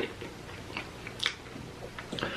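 A person chewing a mouthful of noodles, a few soft, faint mouth clicks, the sharpest a little past the middle.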